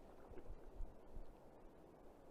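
Quiet, steady rush of flowing river water, with a few low thumps on the microphone.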